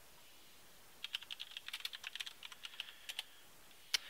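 Computer keyboard typing: a quick run of keystrokes entering a short terminal command, then one sharper key press near the end.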